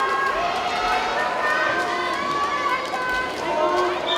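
Crowd of spectators in a pool hall calling out and cheering, many voices overlapping at once with no single speaker standing out.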